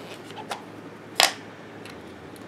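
Plastic prescription pill bottle's cap being twisted off and handled: a faint click about half a second in, then a sharper plastic click a little past one second.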